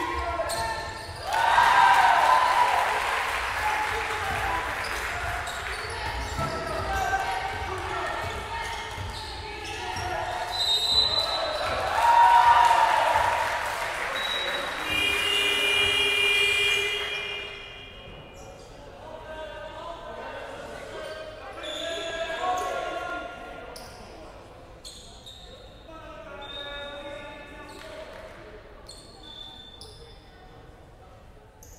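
Indoor basketball game sounds in an echoing sports hall: loud shouting voices around a shot at the basket, with the ball bouncing and short knocks on the wooden court. A steady high buzzer tone sounds for about two seconds around the middle. After it the voices die down and the hall is quieter.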